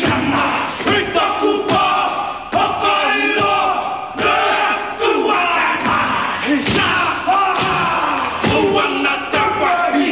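A group of men performing a haka: loud shouted chanting in unison, punctuated by sharp slaps and stamps.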